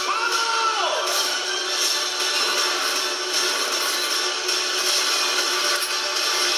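Film trailer audio with music and sound effects. Near the start a held tone slides down in pitch about a second in.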